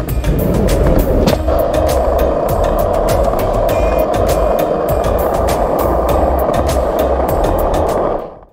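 Skateboard wheels rolling steadily over smooth concrete, a constant rolling noise that grows louder about a second in, under background music with a steady beat.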